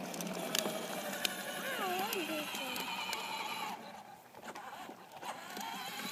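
Small electric motor of a battery-powered toy ride-on motorcycle whirring as it drives slowly, dropping away for about a second and a half around the four-second mark and then picking up again. A brief rising-and-falling voice sound comes in about two seconds in.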